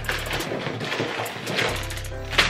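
Rustling and rattling of a cardboard snack box being shaken with wrapped snack pouches inside, over background music with changing bass notes.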